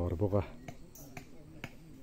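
Scattered sharp clicks, a few a second at irregular spacing, after a brief voice at the start.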